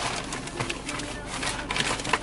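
Paper takeout bag rustling and crinkling in someone's hands, a quick run of irregular crackles.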